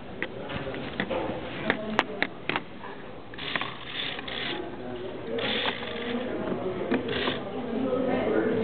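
Motorised Lego car running, its electric motor driving a train of plastic spur gears, with irregular clicks and rattles of the gears and plastic parts as it drives across a desk.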